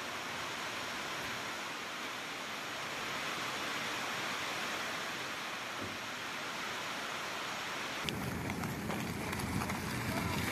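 Steady hiss of rain falling on a corrugated metal roof. About eight seconds in it gives way to a lower, rumbling noise with a few light clicks.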